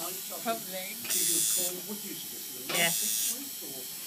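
Electric tattoo machine buzzing steadily while it tattoos a wrist, growing louder twice, about a second in and just before the three-second mark.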